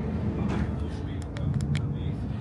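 Steady low rumble of a Deutsche Bahn ICE high-speed train under way, heard inside the passenger carriage, with a few light clicks a little past the middle.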